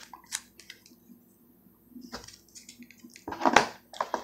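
Rigid plastic toploader card holders being handled and moved, giving scattered light clicks and snaps, with a louder scrape about three and a half seconds in.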